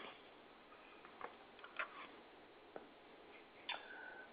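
Near silence: room tone with a few faint, scattered clicks, about four in all.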